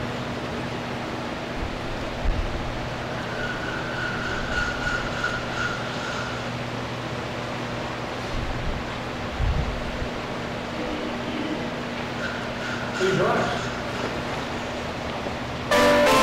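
Quiet church room tone with a steady electrical hum, a few faint thumps and brief faint tones. Just before the end, a keyboard suddenly starts playing, much louder.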